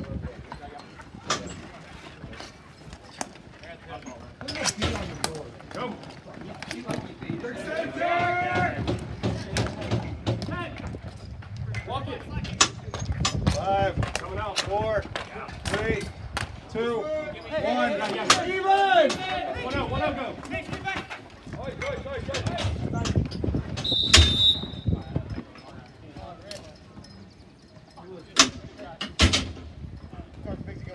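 Dek hockey play: sticks clacking on a plastic ball and on the tiled court, with sharp knocks throughout and players shouting in the middle stretch. Near the end a loud knock comes with a brief high ring.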